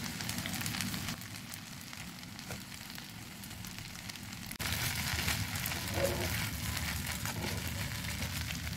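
Pasta sizzling and crackling in a frying pan on the stove, a steady fine crackle that gets suddenly louder about halfway through.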